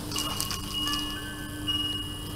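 Electronic chime notes from a bassinet's toy mobile: single high tinkling notes start one after another and ring on, over a steady low hum.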